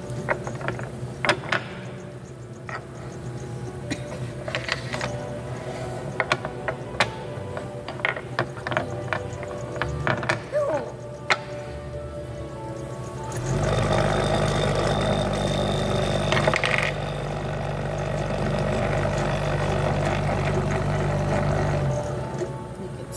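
Irregular sharp clicks and knocks of blocks or small objects being handled on a table. About halfway through, a louder steady mechanical hum with a low drone starts and runs on.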